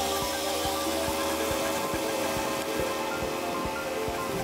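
Background music with held notes and a steady beat.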